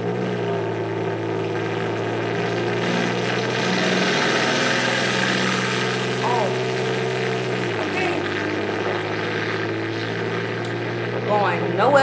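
Main battle tanks running flat out down a drag strip: a steady engine drone with a rushing track-and-running-gear noise that builds to a peak about four seconds in, the drone dropping a step in pitch about eight seconds in.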